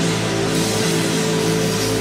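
Live rock band playing: held guitar and bass notes with their overtones over drums and cymbals, at a steady loud level.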